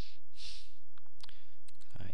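Computer mouse and keyboard clicks: a few sharp separate clicks after about a second as a text field is clicked and typed into. Before them come two short breathy hisses, all over a steady low electrical hum.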